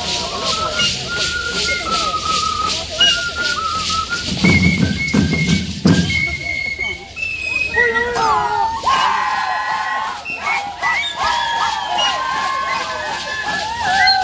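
Live Andean dance music for the Shacshas dance: flutes play a wavering melody over a steady, quick drumbeat. A louder low rumble comes through about four to six seconds in.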